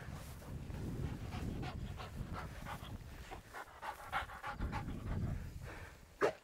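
A pointer dog panting, with short rustles in dry prairie grass.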